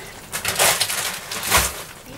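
A plastic bag crinkling and rustling as it is handled, with a louder knock about a second and a half in.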